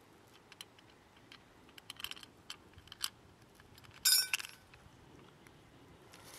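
Scattered small clicks and light metallic clinks from handling the Live Fire Sport's metal tin and its cotton fuel, with a louder, briefly ringing metallic clink about four seconds in.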